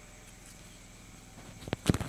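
A quiet pause of faint room hiss, broken near the end by a few short clicks and one brief, louder thump.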